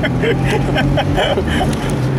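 Car engine running steadily under way, heard from inside the cabin as a continuous low drone with road noise.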